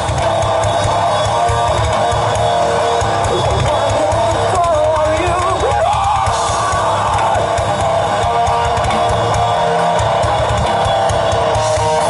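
Live metal band playing loud, steady music on electric guitars, bass guitar and drum kit.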